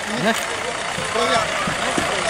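Swaraj Mazda bus's diesel engine running close by, a steady mechanical noise, with several people's voices in the background.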